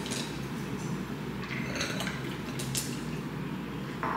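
Cocktail mixture poured from a stainless steel shaker through a metal strainer into a stemmed wine glass: a soft steady trickle of liquid, with a few light clinks of ice, metal and glass.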